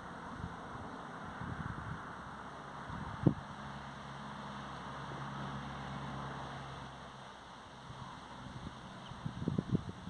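Outdoor garden ambience with a steady airy noise of wind and rustling. A single sharp knock comes about three seconds in, a low steady hum runs through the middle, and a quick cluster of knocks comes near the end.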